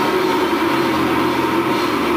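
Grindcore band playing live: a loud, steady wall of distorted guitar and bass, with no clear drum strokes standing out, heard through a camcorder's microphone in the hall.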